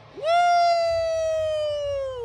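A single loud, drawn-out "woo" shouted close by: it swoops up at the start, holds for about two seconds while drifting slightly lower, then slides down and stops.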